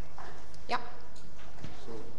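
A few soft knocks near the end over a steady low hum, with a couple of brief spoken words.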